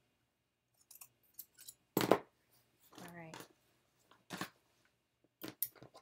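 Scissors clicking and snipping as baby-clothes fabric is handled and cut: a handful of short separate strokes, the loudest about two seconds in and a quick cluster near the end. A brief murmur of a woman's voice, rising in pitch, comes about three seconds in.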